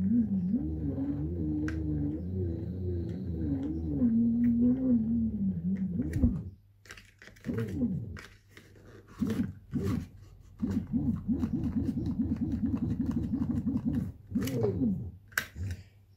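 Fisher & Paykel SmartDrive washing machine motor spun by hand as a generator. Its magnet rotor gives a low hum whose pitch wavers with speed and falls away about six seconds in. Later, quick repeated pushes make the hum pulse about four times a second, before it falls off again near the end, with scattered knocks on the plastic rotor.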